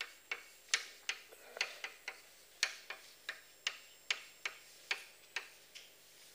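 Chalk striking and writing on a blackboard: a run of sharp, irregular clicks, about three or four a second, thinning out near the end.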